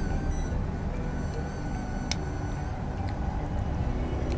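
Steady low rumble of street traffic, with one sharp click about two seconds in.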